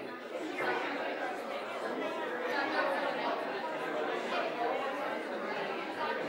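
A congregation chatting, many overlapping conversations at once with no single voice standing out.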